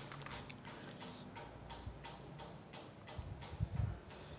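Faint, regular ticking, about three ticks a second, with a few low thumps near the end, the kind made by handling the phone and the paper sheets.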